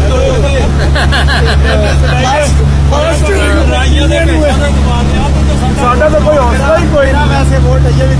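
Motorboat engine running with a steady low drone, with several people chattering over it.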